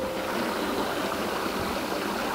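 Water running steadily in a garden koi pond, an even rushing trickle with no breaks.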